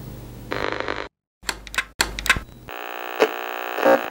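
Electronic intro sound effects: a burst of glitchy noise cuts out about a second in, and after a short dead gap come several sharp clicks and crackles. Then a steady buzzing electronic tone holds for about a second and stops just as the speech begins.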